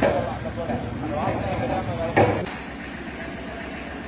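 Indistinct voices of people talking in a street, with one sharp knock a little over two seconds in. After that the voices stop and a steady low street hum remains.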